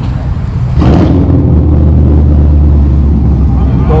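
A car engine running close by: a steady low rumble that grows louder about a second in.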